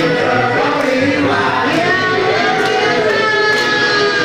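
A crowd singing together along with music, led by a singer on a microphone.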